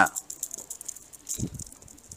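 A pause between speech with faint scattered clicks and light rattling, and a brief low voice sound about one and a half seconds in.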